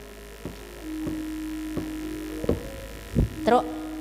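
Sharp wooden knocks, about one every 0.7 s and growing louder, typical of a wayang kulit dalang's cempala striking the puppet chest, over a steady low hum.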